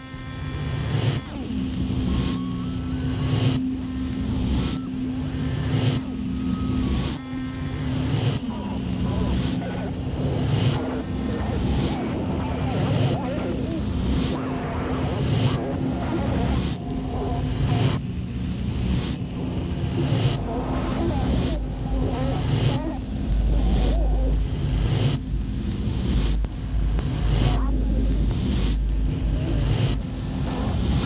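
Industrial noise music from a cassette: a droning tone and dense noise over a regular pulse of about three beats every two seconds. About two-thirds of the way in, a deep low rumble joins.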